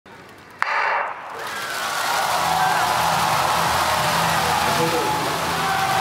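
A starting gun fires about half a second in, loud and sudden, to start a 4x400 m relay. Then the stadium crowd's noise swells and holds, with cheering and shouting voices through it.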